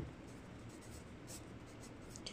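Faint scratching of a pencil writing on a paper book page.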